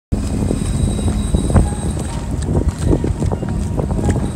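Wind buffeting the microphone on a fishing boat over a steady engine hum, with quick irregular knocks several times a second.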